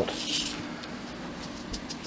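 Faint rustle of corn tassels being shaken in a mesh kitchen strainer to sift the pollen out, briefly audible near the start, over a steady low hum.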